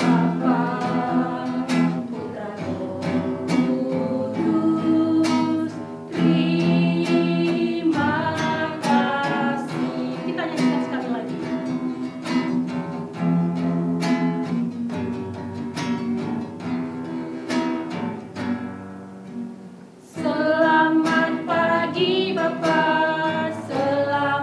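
An Indonesian worship song sung by a small group of voices to acoustic guitar strumming. Near the end the singing fades for about two seconds, then the voices come back in strongly.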